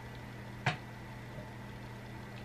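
Quiet room tone with a steady low hum, and one short click about two-thirds of a second in as makeup tools are handled.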